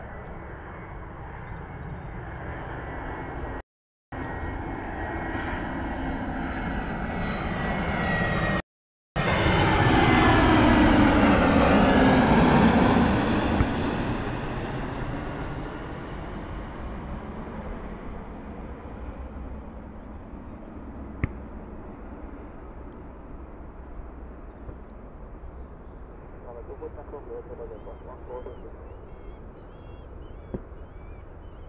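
A twin-engine jet airliner flies past on final approach. Its engine whine grows louder to a peak about ten to thirteen seconds in, then falls in pitch as it passes and fades away. The sound cuts out completely twice, briefly, in the first nine seconds.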